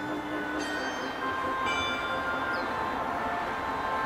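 Bell tones struck twice, about a second apart, each ringing on and fading slowly over sustained tones and a steady low hiss in an ambient soundscape.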